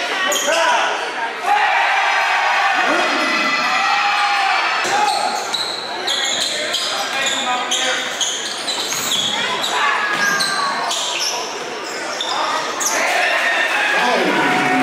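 A basketball being dribbled on a hardwood gym floor, with repeated sharp bounces, as voices of players and spectators echo in the gym.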